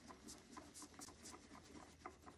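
Microfiber cloth rubbed over a smartphone's glass screen: faint, quick scratchy strokes, several a second.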